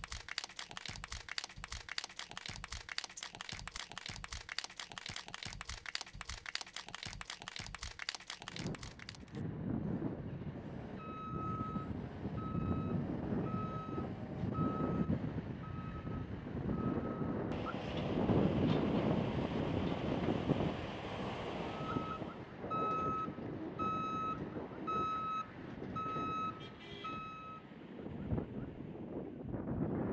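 Applause for about the first nine seconds. Then a container reach stacker's engine runs while its reversing alarm beeps about once a second, in two runs separated by a pause.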